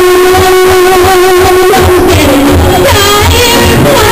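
A girl singing a pop song through a microphone and PA, very loud, holding long notes that waver near the end, with acoustic guitar accompaniment and a regular low pulsing beat underneath.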